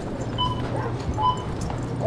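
Busy grocery-store background noise with a steady low hum, and two short, steady high-pitched tones about a second apart.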